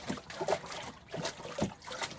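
Water sloshing and trickling in a small clear plastic wave tank as a hand-worked paddle makes waves, with a few soft irregular splashes.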